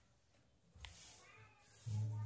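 Mostly quiet room tone with a single soft click a little under a second in, then a faint, short, high-pitched call in the background.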